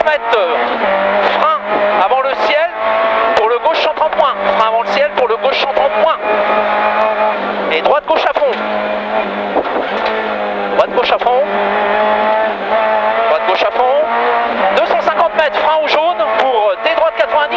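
Renault Clio Ragnotti N3 rally car's engine heard from inside the cabin, driven flat out. The revs climb and drop again and again.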